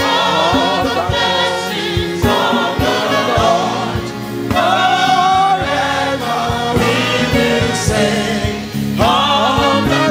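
Choir and congregation singing a gospel praise chorus with instrumental accompaniment and a steady beat.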